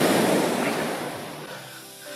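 Sea surf breaking and washing up a sandy beach, a rushing hiss that fades away over the two seconds as the wave runs out.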